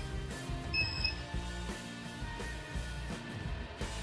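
Quiet background music, with a short electronic beep about a second in from the injector test bench's control-panel keypad being pressed.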